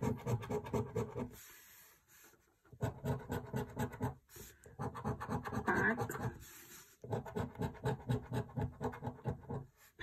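A coin scratching the scratch-off coating of a paper scratch card in quick rapid strokes. It comes in four runs, each of a second or two, with short pauses between them as it moves from panel to panel.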